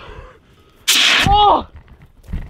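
A man's wordless outburst about a second in: a sharp hissed breath that runs straight into a drawn-out voiced cry, rising and then falling in pitch.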